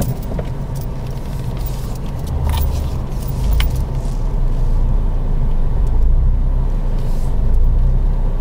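Car engine running and road noise heard from inside the cabin, a low rumble that grows louder from about two seconds in as the car pulls away, with a few light clicks early on.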